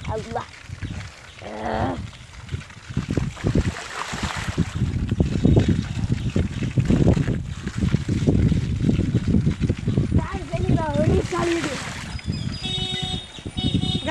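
Wind buffeting the microphone in irregular gusts while riding a bicycle.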